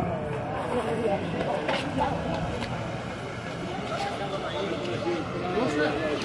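Busy street ambience: indistinct voices of passers-by and a general outdoor bustle, with no single loud event.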